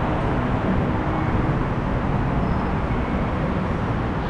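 Steady low rumbling background noise of an elevated rail station concourse, with no distinct events standing out.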